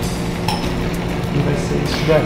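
Salt cod and white wine sizzling steadily in a hot frying pan as the wine cooks off, with a single light clink about half a second in.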